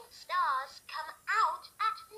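VTech Moosical Beads plush cow toy singing a song in its recorded synthetic voice, four sung syllables with gliding pitch.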